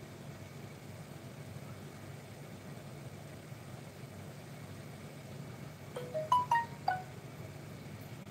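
A quick run of five chiming notes, rising then falling in pitch within about a second, comes about six seconds in over a steady low hum.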